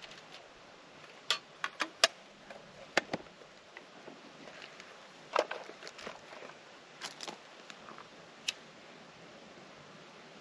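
Scattered sharp clicks and snaps, about ten in all, from handling fire-starting gear and kindling, mostly in the first few seconds.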